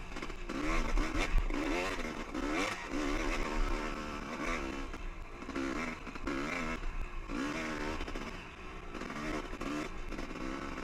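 Two-stroke dirt bike engine under way, its revs rising and falling again and again as the throttle is worked on a climbing trail, with a steady low rumble of wind on the microphone. A sharp knock stands out about a second and a half in.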